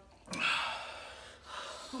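Someone sucks air in sharply through the mouth while eating noodles: a hiss that starts about a third of a second in and fades over about a second. A voice starts right at the end.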